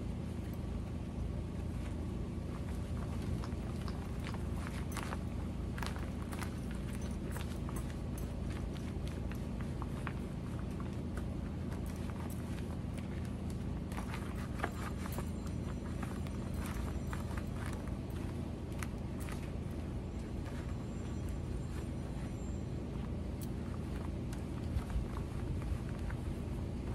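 Microfiber cloth rubbing over a plastic TV remote in rubber-gloved hands, with scattered light clicks and rubs, over a steady low rumble.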